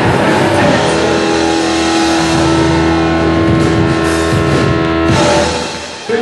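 Live punk rock band playing electric guitar, bass and drums, with one long held note through the middle. The sound dies away a little after five seconds in, as the song ends.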